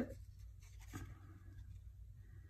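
Faint rustle of a strip of paper and a length of lace trim being handled and lined up against each other, slightly stronger about a second in.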